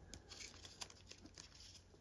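Near silence with faint rustling and a few light ticks of trading cards being slid one by one through the hands.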